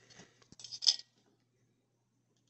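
Handling noise from a metal PAR56 light can being turned over in the hand: a click about half a second in, then a short scrape or clink, and quiet after.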